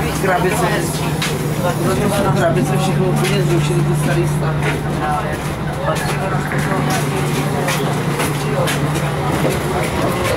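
Steady low drone of a ČD class 814.2 RegioNova diesel railcar's engine running at a station stop, heard from inside the car. Passenger voices and scattered light knocks sound over it.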